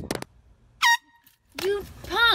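A single short, loud horn blast just before a second in, followed by two shrill yelps that rise and fall in pitch near the end, typical of a startled person shrieking.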